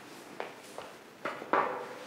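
A few light knocks, then a louder clatter, as ceramic serving dishes are handled and picked up from a glass tabletop. The clatter comes about one and a half seconds in and is the loudest sound.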